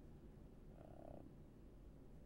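Near silence: room tone with a low steady rumble, and one faint, brief voice sound, like a hum or murmur, about a second in.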